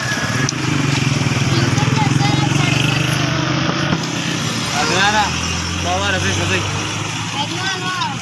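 A motor vehicle's engine running close by with a steady low hum, loudest in the first half and lower in pitch later, with people's voices over it in the second half.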